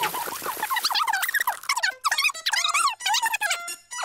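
High-pitched, squeaky cartoon giggling in quick chirps that rise and fall in pitch, with music behind.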